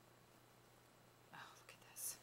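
Near silence: room tone with a low steady hum. About a second and a half in comes a faint whispered voice, then a short hiss at the very end.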